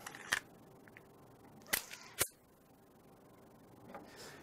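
Beretta Pico .380 pocket pistol being put back together by hand. There is a click as the slide goes onto the frame, then a little over a second later two sharp metallic clicks about half a second apart as the parts seat.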